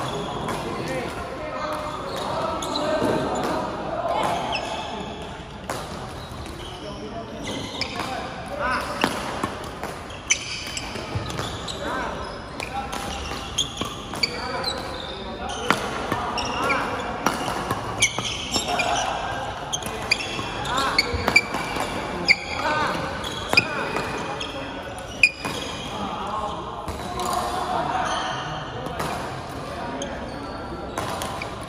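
Badminton doubles rally in a large echoing sports hall: sharp racket strikes on the shuttlecock, densest in the second half, with shoes squeaking on the court floor. A steady murmur of voices from the surrounding courts runs underneath.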